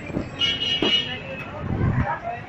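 Elevator car starting down: a short high electronic tone a little under a second long, with a click in the middle and low thumps at either end, over background voices.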